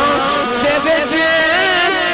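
A man singing long, wavering held notes with slow glides in pitch, in a melodic sung recitation of verse, heard through a public-address microphone.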